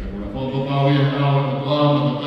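A man's voice intoning a chant at a low, nearly level pitch, with long held notes.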